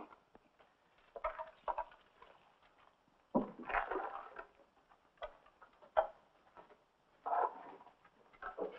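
Quiet scattered handling sounds: soft rustles and a few light knocks and clicks, as people move and pass things about.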